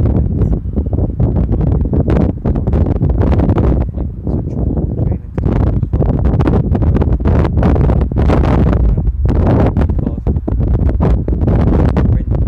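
Loud, gusty wind buffeting the camera's microphone: a low rumble that surges and dips irregularly.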